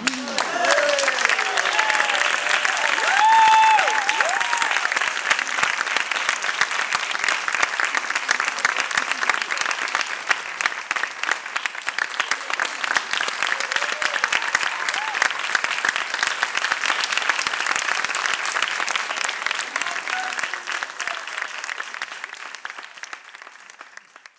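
Audience applauding, with whoops and cheering voices in the first few seconds, the loudest about three and a half seconds in. The clapping thins out and fades away near the end.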